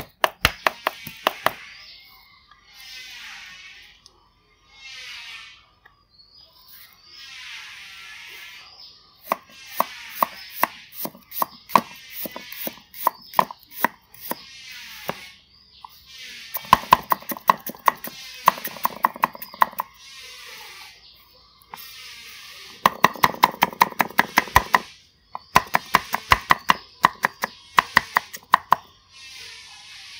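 Cleaver chopping on a chopping block, mincing shiitake mushrooms and carrot: rapid runs of knife strikes in several bursts with short pauses between them.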